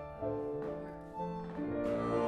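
Live instrumental band music: a Roland digital button accordion playing held melody notes over a plucked upright bass.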